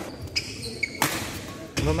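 Badminton rally on a wooden indoor court: a sharp racket strike on the shuttlecock about a second in, with high squeaks of shoes on the court floor before it.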